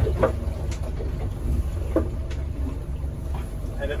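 Steady low rumble of a small fishing boat at sea in strong wind, with a few short knocks and clicks as a herring drift net is paid out over the stern.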